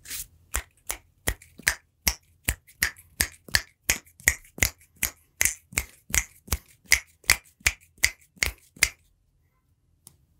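A person's hands making a regular run of sharp, snapping clicks close to a microphone, about three a second, stopping about a second before the end.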